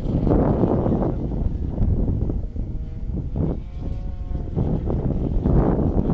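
Wind buffeting the microphone in uneven gusts, with a brief faint steady hum a little past the middle.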